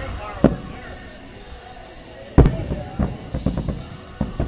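Aerial firework shells bursting: a bang about half a second in, a louder bang about two and a half seconds in, then a string of quick crackling pops.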